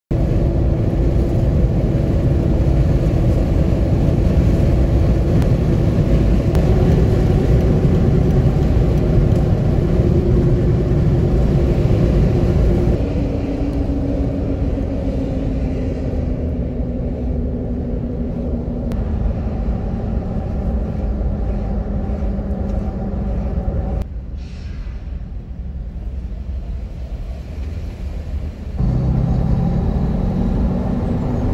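Jeep Wrangler driving on the highway, heard from inside the cabin: a steady engine and tyre rumble with a hum. The hum drops in pitch and loudness a little under halfway through as the vehicle slows. It quietens further about four-fifths in, then picks up again just before the end.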